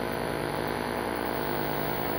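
Steady hum and hiss with several faint, unchanging tones and no sudden sounds: the room tone of a large hall with an amplified sound system.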